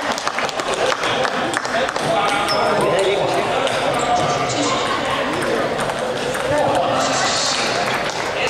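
Table tennis balls clicking off tables and bats across a busy sports hall, many short, sharp clicks at irregular times, over a steady hubbub of voices.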